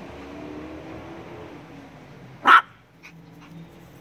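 A Yorkshire terrier gives one short, loud bark about two and a half seconds in.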